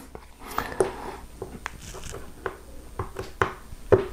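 A handful of sharp little clicks and taps, spaced irregularly, as a screwdriver pushes small nuts into their slots in the plastic housing of a Bondtech LGX Lite extruder.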